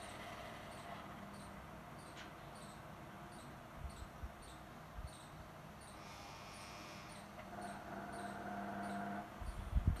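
Faint steady electrical hum, with faint high ticks repeating at an even pace and a few soft handling knocks.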